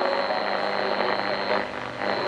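National RX-F3 radio cassette recorder's speaker playing an AM broadcast: a faint voice under heavy static hiss, with a steady high whistle of interference.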